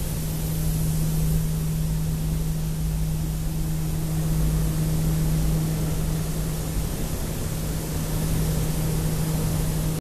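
Steady industrial machinery noise: a constant low hum with a hiss over it.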